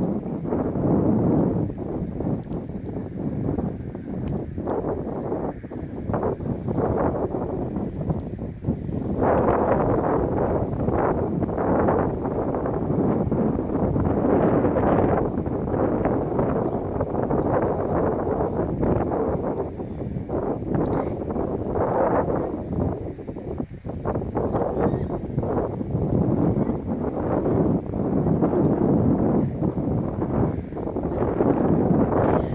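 Wind blowing across the microphone: a low rumbling noise that swells and drops in gusts.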